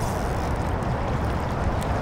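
Steady wind rumble on the microphone over choppy river water, an even noise with no distinct events.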